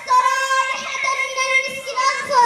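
A high voice singing one long held note of an Islamic devotional song (menzuma), carried over a loudspeaker.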